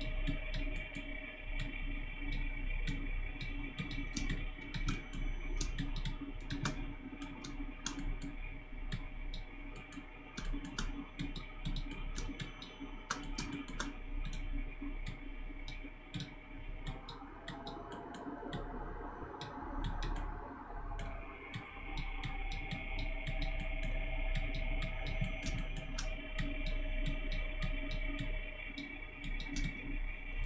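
Frequent clicks of a computer mouse over soft background music of steady held tones, with a low hum underneath.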